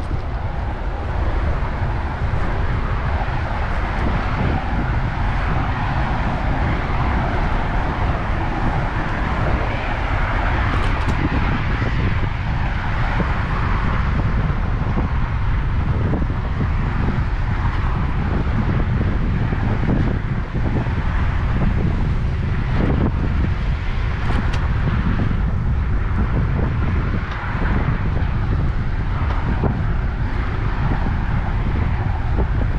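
Wind buffeting the microphone of an action camera on a moving bicycle, a steady rumble with a hiss of passing road traffic mixed in.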